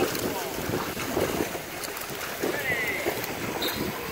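A swimmer's front-crawl splashing and kicking in a pool, mixed with wind on the microphone.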